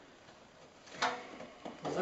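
A single sharp knock about a second in, then a shorter knock, over low room noise.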